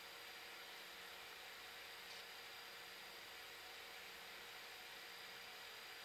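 Near silence: room tone, a faint steady hiss with a faint steady hum.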